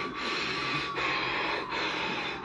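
Steady, even hiss of background noise with no voices, dipping briefly a few times.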